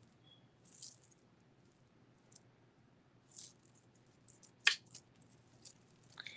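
A strand of cultured freshwater peacock pearls handled in the fingers: faint, scattered clicks and rattles of the pearls against each other, with one sharper click nearly five seconds in.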